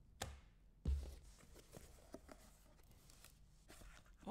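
Faint handling sounds of a cardboard card box and a plastic card case: a sharp click, a dull thump about a second in, then scattered light taps and clicks.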